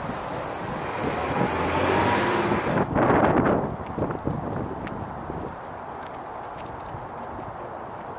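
Outdoor traffic noise with wind buffeting the microphone. A louder swell about three seconds in, like a vehicle passing, then a steadier, quieter hum of traffic.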